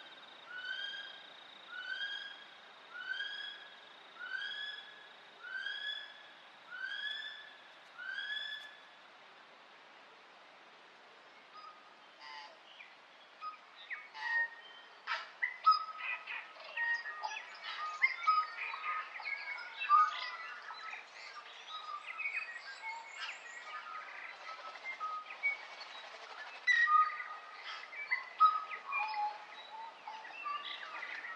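Night forest ambience. A single animal call repeats about once a second, each note rising then falling, about nine times. After a short lull, a busy chorus of many birds chirping and trilling runs through the rest.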